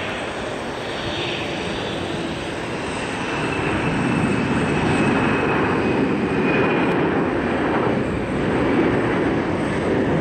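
Boeing 747-400's four Pratt & Whitney turbofans at takeoff thrust as the jet lifts off and climbs out: a steady, dense jet-engine noise that grows louder about four seconds in. A faint high whine falls slightly in pitch in the middle.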